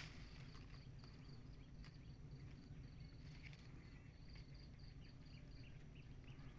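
Faint insect chirping in a steady run of short, high-pitched pulses, over near silence.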